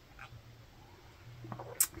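A quiet sip and swallow from a wine glass, with a faint mouth click near the end.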